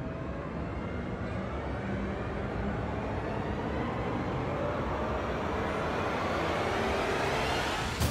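Steady rushing roar of aircraft engine and wind noise, slowly building in level with a faint rising whine.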